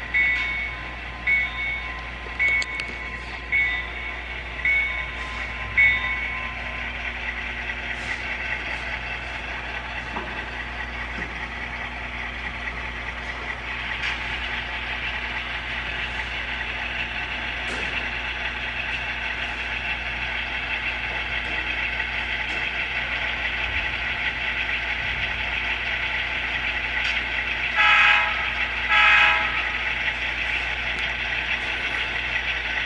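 Sound system of a model Southern Pacific diesel locomotive: a bell dings about once a second for the first six seconds, then the diesel engine sound runs steadily over a low hum. Two short horn blasts sound near the end.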